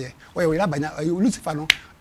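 A man talking, then one sharp finger snap near the end, the loudest sound in the moment.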